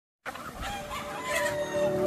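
A large flock of gamefowl roosters and hens clucking, with a rooster crowing in the second half; the sound starts abruptly and grows louder.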